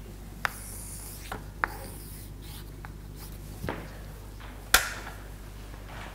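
Chalk on a blackboard: a few sharp taps and a brief high scratch about a second in as figures are written, then a louder single knock near the end.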